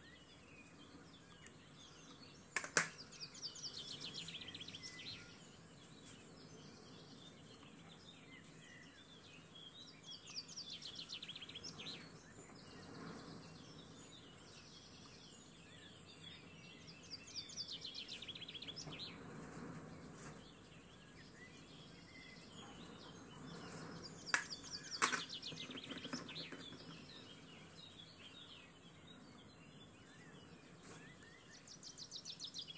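A bird singing short, fast chirping phrases, four of them spaced several seconds apart, over a faint steady hiss. Two sharp clicks stand out as the loudest sounds, one a few seconds in and one near the end.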